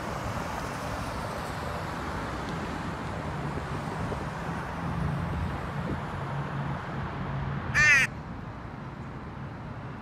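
A crow caws once, short and loud, about eight seconds in, over a steady low hum of city street noise.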